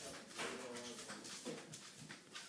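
A grumpy pet hamster squeaking faintly a few times, in short calls.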